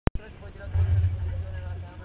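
A sharp click at the very start, then a low rumble under faint voices in the background.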